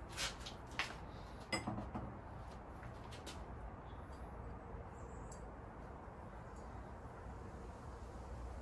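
Glazed pottery pieces handled and set down, giving a few light clinks and knocks in the first few seconds, then a faint steady background.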